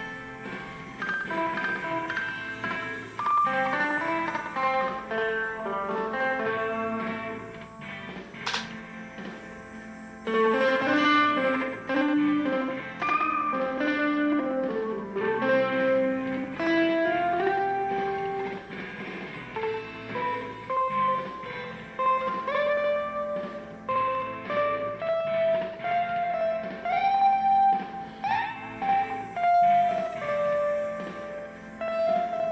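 Background guitar music: a melodic guitar line with notes that slide in pitch here and there, and one sharp click about a third of the way in.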